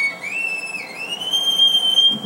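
Violin playing a very high, thin, whistle-like note. It slides up, dips briefly, then slides up again and is held.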